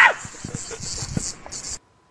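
The tail of a cartoon character's short high scream, cut off just as it starts, then a faint hiss with a few soft taps. The sound drops out completely near the end.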